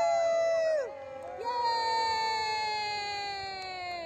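Several people whooping long, drawn-out "woo" calls that overlap, each held for a second or more and slowly falling in pitch; one call breaks off about a second in and a new, higher one rises soon after and fades toward the end.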